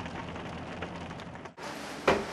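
Steady road and engine noise inside a moving Mercedes-Benz car's cabin. It breaks off briefly about a second and a half in.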